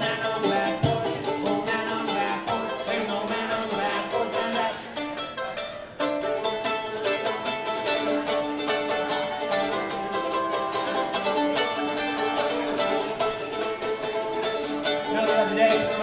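Mandolin strummed fast and steadily in an instrumental break, with a brief dip about six seconds in before the strumming picks up again.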